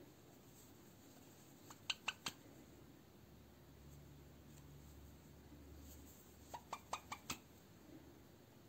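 Near silence broken by two short runs of light clicks, three or four about two seconds in and five or six about six and a half seconds in. They come from hands working a sewing needle and thread through needle lace.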